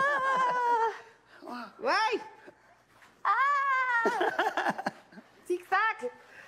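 Adult voices calling out in long drawn-out cries that swoop up and down in pitch, four of them with short pauses between, like playful whoops while running.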